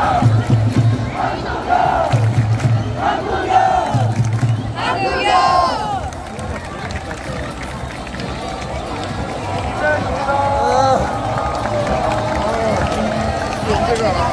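Football supporters chanting in unison with low drum beats in time, about one chant every two seconds for the first five seconds, then a long shout. After that the crowd carries on more quietly with scattered voices.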